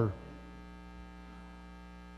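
A man's voice trails off at the very start, leaving a steady, low electrical mains hum.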